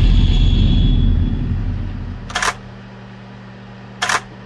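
Trailer title-card sound effects: a deep boom that fades out over about two seconds, then a short sharp click about two and a half seconds in and another at the very end, over a low steady hum.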